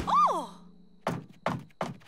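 A short cartoon cry of "Oh!" at the start, then three sharp footsteps of heeled boots, about a third of a second apart, as a character walks out.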